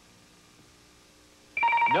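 Quiet studio room tone, then about one and a half seconds in a game-show time-up signal cuts in: a loud electronic ring of two steady tones with a fast trill. It marks that time has run out with no answer given.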